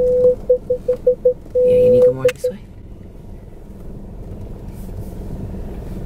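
Car parking-sensor warning tone at one pitch: a steady tone that breaks into quick beeps, goes steady again about a second and a half in, then gives a couple more beeps and stops about two and a half seconds in. This signals obstacles very close to the car, which is squeezing through a narrow street. The engine and tyres are heard underneath.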